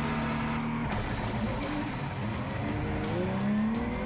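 Ginetta G56 GTA race car's V6, heard from inside the cockpit, held at steady revs on the grid; about a second in the note changes as the car launches from a standing start, and the revs then climb steadily through the rest.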